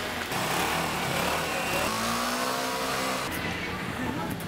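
City street traffic, with a motor vehicle's engine passing close by about halfway through, its pitch arching up and back down.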